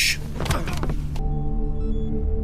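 Drama soundtrack: a short scuffle with a sharp hit about half a second in, then, a little after a second in, a low steady drone with several held tones sets in.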